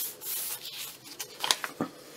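Paper rubbing and rustling as a journaling card is slid out of a paper envelope in a handmade journal, then a few sharp clicks about one and a half seconds in.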